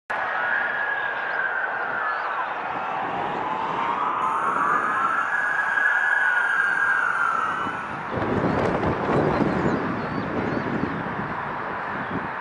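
Sirens of airport fire crash tenders wailing, two tones sweeping slowly up and down together. About eight seconds in they give way abruptly to a gusty rumbling noise.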